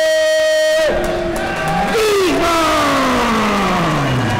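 Ring announcer's voice dragging out the end of a boxer's name on one long held note that stops about a second in, followed by a long shouted call sliding down in pitch, with the crowd in the hall behind it.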